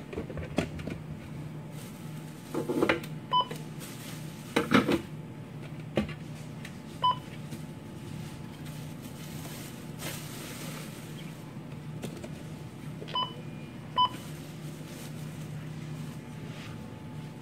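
Checkout barcode scanner beeping four times as items are scanned at the register: short, identical mid-pitched beeps, the last two close together. Items are handled with a few clattering knocks and rustles in the first few seconds.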